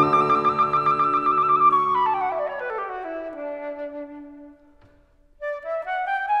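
Flute and piano playing classical music: the flute holds a high trilled note over a piano chord, then runs down in a descending line as the sound fades to a short pause about five seconds in. Near the end the flute alone starts a new phrase that climbs upward step by step.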